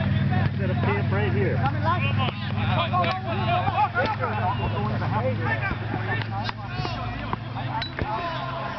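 Players' voices shouting and calling to each other across a soccer field, several at once and too far off to make out, over a steady low hum.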